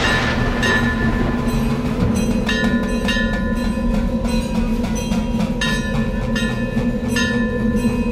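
A steady low droning tone from the soundtrack, overlaid with higher ringing metallic strikes that come in irregularly every second or two.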